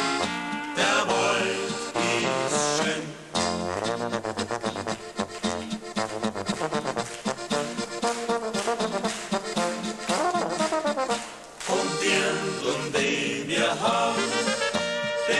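Alpine folk brass band playing an instrumental passage between sung verses: trumpets, accordion and tuba, with a stretch of quick repeated notes in the middle.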